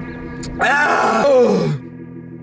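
A man's loud groan of disgust, about a second long, falling in pitch as it trails off, over background music.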